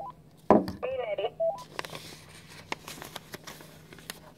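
A handheld two-way radio is set down on a wooden table with a knock, then gives a brief wavering chirp and a short beep. After that come the soft rustles and ticks of paper being creased and folded.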